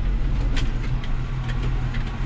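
Tractor engine running steadily in the field, heard from inside the cab while it pulls a slurry tanker in third gear, third half-gear: a constant low drone with noise over it. A single faint click about half a second in.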